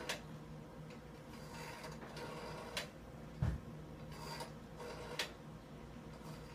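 Rotary telephone dial being wound round and let go to spin back, with faint ticking and rubbing as it returns and a few sharp clicks spaced a couple of seconds apart.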